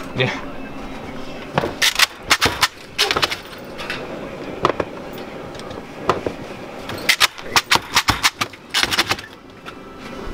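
Hard candy pieces and the metal candy chopper clicking and clattering as the cut candy is worked out of the chopper's grooves, in quick clusters of sharp clacks.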